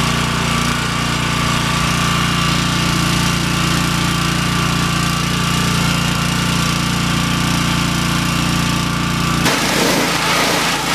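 Pressure washer running steadily while its spray plays on a poly dump cart and its wooden sides. Near the end the sound shifts abruptly to a rougher, noisier spray.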